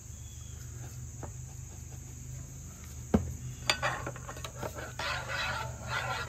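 A metal spoon knocks once against a rice cooker pot and then stirs rice in salsa and water from about halfway in, scraping and swishing. A steady high insect chirring carries on underneath.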